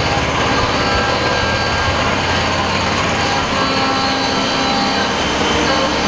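CNC machine tools running in a machining shop: a loud, steady mechanical drone carrying several constant high tones.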